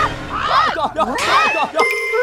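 Several people shrieking in surprise, their voices rising and falling and overlapping. Near the end comes a sharp hit, followed by a bright ringing ding sound effect.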